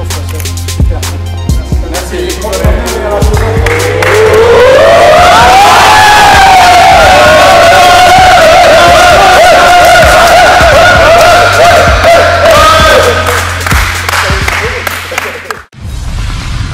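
Background music with a steady, bass-heavy beat. About three seconds in, a group of men's voices rises in pitch into one long, loud cheer that is held for about ten seconds as the trophy is lifted. The music cuts off suddenly just before the end.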